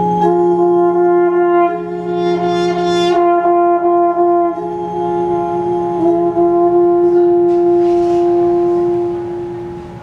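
Chamber ensemble of wind instruments, the French horn prominent, holding long sustained notes that overlap as a chord; the lowest note drops out about three seconds in and the rest fade out near the end.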